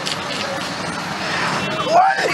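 Road traffic: a steady hiss and rumble of vehicles on a busy street, with a brief high-pitched tone near the end.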